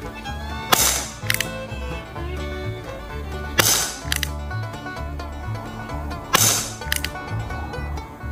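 Umarex Western Cowboy CO2 BB revolver fired three times, about three seconds apart: each shot is a sharp crack, followed about half a second later by a shorter click.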